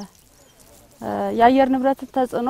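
A person's voice with a pause of about a second, then the voice resumes with drawn-out, held pitches.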